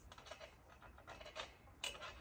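Faint, irregular clicks and light taps, about seven in two seconds, with a sharper one near the end, from feet and springs on a trampoline as a person steps across the mat.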